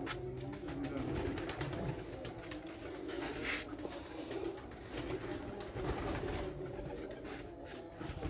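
Domestic pigeons cooing, a low continuous murmur.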